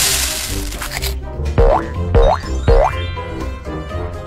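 Children's cartoon background music with a steady beat. A noisy crash-like burst fills the first second. Then come three quick rising 'boing'-type cartoon sound effects, each with a thump, about half a second apart.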